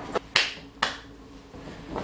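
Three sharp hand slaps or smacks, a small one and then two louder ones within about a second, each with a short fading ring.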